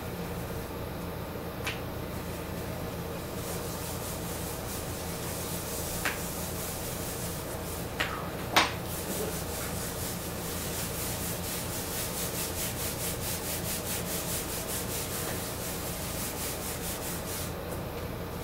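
A wipe rubbed back and forth across a children's drawing board to erase it, in quick even strokes in the second half. A few sharp taps and knocks come before, the loudest about halfway.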